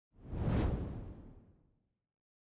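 A whoosh sound effect from a title animation: one swelling rush of noise with a deep low end that peaks about half a second in and fades away by about a second and a half.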